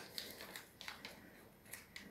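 Craft paper being folded and creased by hand: faint, scattered crinkles and crackles, about five in two seconds.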